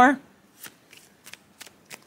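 A deck of tarot cards shuffled by hand: a string of light, separate clicks and flicks of card on card.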